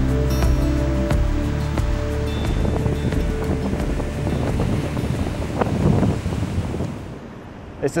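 Background music fading out over the first second or two, giving way to surf washing onto a sandy beach with wind on the microphone; the surf sound drops away a second before the end.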